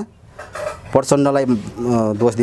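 A man speaking, starting about a second in after a short pause.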